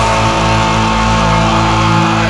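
Death metal song at a break where the drums drop out and a distorted electric guitar chord is held, ringing steadily.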